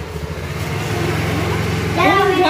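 Honda Activa scooter's small single-cylinder four-stroke engine idling with a steady low hum, just after being started.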